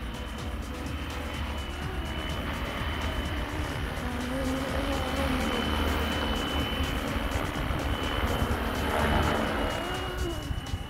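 Electric RC helicopter with a two-blade main rotor flying close by: a steady high motor whine with lower rotor tones that waver as it manoeuvres, growing a little louder near the end. Heavy wind rumble on the microphone underneath.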